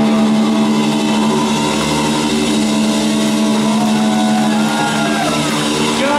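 Live rock band with distorted electric guitars and keyboard holding a long, sustained chord at the close of the song.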